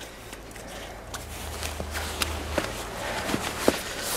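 Faint rustling with scattered light clicks, from hands working at a plastic windshield washer nozzle on the underside of a car hood.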